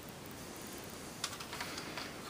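Faint handling noise of a plastic LEGO model being turned in the hands, with a few light clicks and rustles in the second half.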